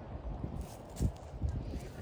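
Hoofbeats of a horse moving over sand arena footing, a few low thuds at uneven spacing.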